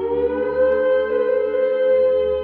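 A long wailing tone with rich overtones, rising slightly at first and then holding one steady pitch.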